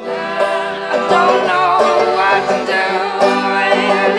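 Folk-punk band playing an instrumental stretch, led by banjo with accordion and other instruments; the full band comes in loud right at the start and stays dense throughout.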